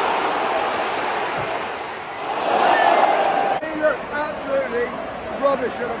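Football stadium crowd noise, a dense roar that swells about two and a half seconds in and cuts off suddenly. A man then talks over quieter crowd noise.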